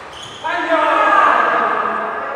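A person's loud, drawn-out shout in a reverberant indoor badminton hall, starting about half a second in and holding for over a second as the rally ends.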